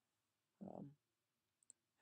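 Near silence, broken by a brief spoken 'um' and then two faint quick clicks close together near the end.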